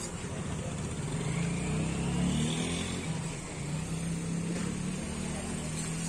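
A motor vehicle engine running close by as a steady low hum, from about a second in, shifting slightly in pitch, over a background of crowd noise.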